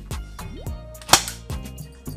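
Airsoft pistol firing a few sharp shots of tracer BBs through a muzzle-mounted tracer unit, the loudest about a second in, over background music.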